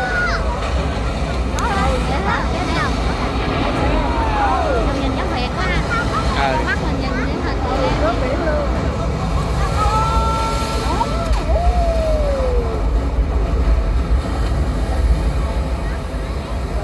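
Voices with many rising and falling sliding sounds over a steady low rumble, from an outdoor water-screen projection show and its audience.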